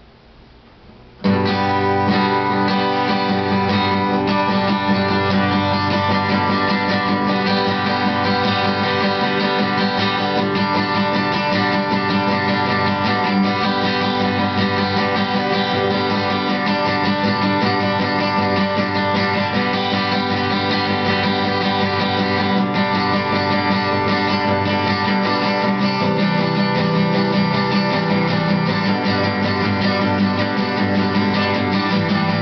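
Solo acoustic guitar playing an instrumental piece, starting about a second in and running on at a steady level.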